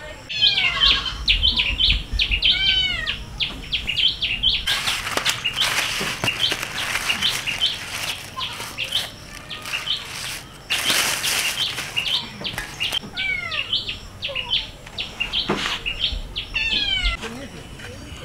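Birds chirping and calling in quick, repeated high notes, with two louder stretches of rustling, the second as a fish is pulled out of a plastic bag.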